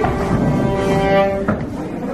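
Two fiddles playing together, bowing long held notes, with a change to new notes about one and a half seconds in.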